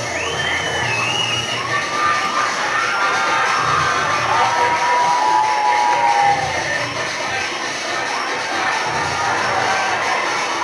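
Audience cheering and shouting, with several high drawn-out cries over the din and dance music with a pulsing beat playing underneath.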